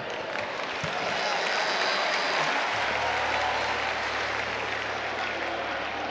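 A large congregation applauding steadily, swelling during the first second. A low steady hum joins about halfway through.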